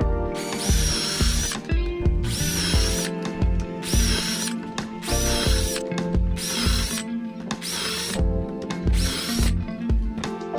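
Cordless drill with a self-centering bit boring shelf-pin holes through a shelf pin jig into baltic birch plywood: seven short runs, each about a second long with a whine that rises as it starts, about a second apart.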